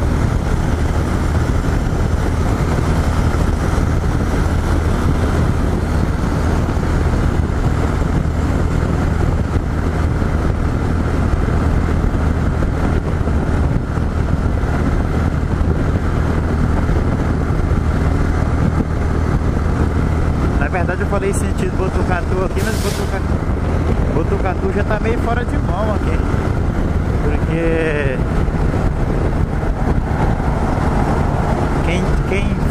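Yamaha XT 660Z Ténéré's single-cylinder engine running at a steady highway cruise, with wind rushing over the microphone.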